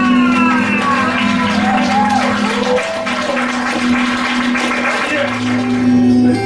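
Guitar improvisation: a held drone note with sliding, falling and arching pitches above it in the first half, and a lower sustained note coming in near the end.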